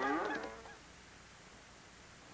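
A short, fading tail of the commercial's sound track in the first half-second, then near silence: the gap between an advertisement and the return of the broadcast.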